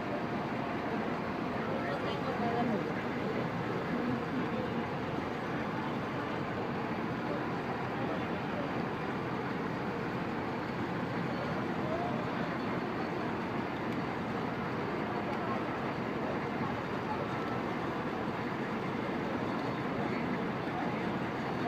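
Steady city-street ambience: traffic noise from the vehicles in the street, mixed with the indistinct voices of people walking by.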